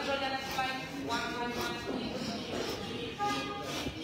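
Indistinct talking in an airport terminal concourse, in short bursts over the hall's general background.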